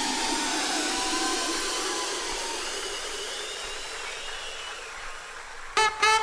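An electronic white-noise sweep effect, a hiss with faint gliding tones that slowly fades down. Just before the end, dance music cuts in with short, sharp, repeated stabs.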